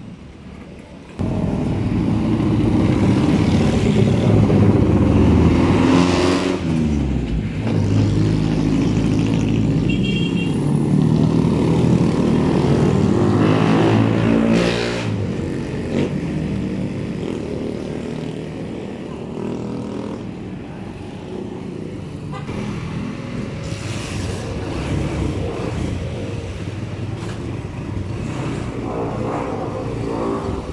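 Motorcycle engine running and revving up and down, loud from about a second in, then settling to a lower, steadier run about halfway through, with street traffic around it.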